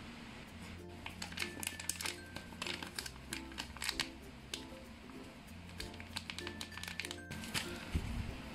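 A clear plastic bag of powder crinkling in the hand in many short crackles as it is tipped and shaken over a pot, with background music playing throughout.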